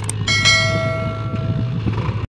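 A diesel tractor engine running steadily under load as it pulls a loaded trolley through sand. Over it, two quick mouse-click sounds and then a bright chime ringing out and fading: the sound effect of a subscribe-button and bell-icon animation.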